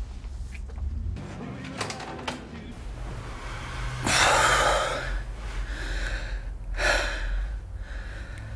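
A man and a woman breathing heavily, with two loud breathy gasps about four and seven seconds in.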